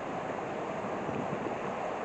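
Small river rushing steadily over rocks and through riffles, running fast after snow and rain.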